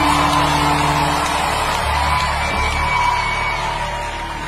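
A large congregation cheering and whooping over church music with sustained bass notes, easing off slightly near the end.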